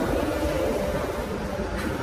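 Steady low rumble of background room noise, with a few faint sustained tones underneath.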